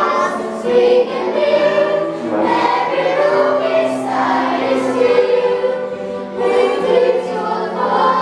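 Mixed choir of men's and women's voices singing in unison, holding long notes, with a violin playing along.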